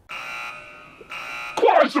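Edited-in sound effect: a steady buzzer-like alarm tone sounding with a short break about a second in, then a loud voice calling out near the end.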